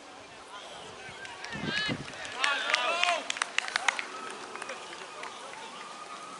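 Voices of players and spectators shouting across an open rugby pitch, loudest about two to three seconds in, followed by a quick run of sharp claps.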